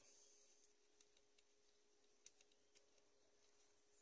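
Near silence: faint background hiss with a couple of tiny clicks just past the middle.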